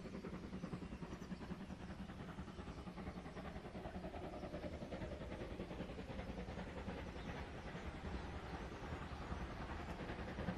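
Distant exhaust beats of the DR class 35.10 steam locomotive 35 1097-1 working hard up a gradient, a fast even chuffing that grows slightly louder toward the end as the train approaches.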